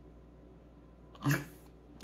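Quiet room tone, then a little past a second in a toddler's single short vocal sound, a baby-talk attempt at repeating the words "killer bunnies" that he was just asked to say.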